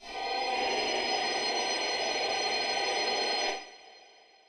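A Reveal Sound Spire software synthesizer playing an AI-generated FX preset: a dense, sustained sound of many steady tones over a noisy layer, which holds for about three and a half seconds, then drops away and trails off in a fading tail.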